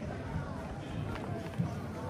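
Street sounds on a cobbled pedestrian lane: soft low thuds of footsteps, about three a second, with passers-by talking indistinctly.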